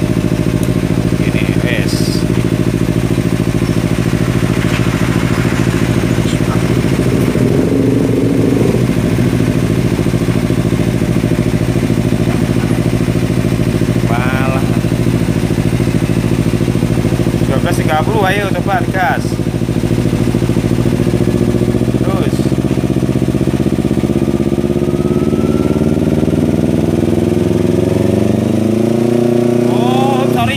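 Kawasaki Ninja 250 FI's fuel-injected parallel-twin engine idling steadily, then its revs climbing gradually over the last several seconds. It runs without its regulator/rectifier fitted, so the battery is not being charged.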